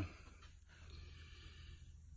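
Very faint steady low hum and background hiss, with no distinct sound.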